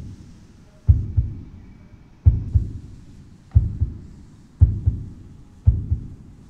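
Heartbeat sound effect: deep double thumps, five in all, coming gradually faster, from about one every 1.3 seconds to about one a second.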